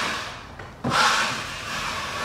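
Steel 12-inch drywall taping knife scraping along a sheetrock joint as it spreads and feathers out a finish coat of joint compound. One stroke trails off at the start, and a second begins a little under a second in.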